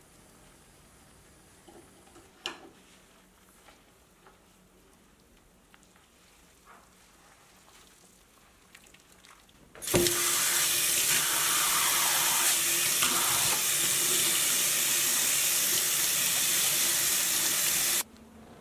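Kitchen tap running steadily into a stainless steel sink, pouring onto wet dyed mesh fabric to rinse it. It starts suddenly about halfway through, after a faint first half that holds one short knock.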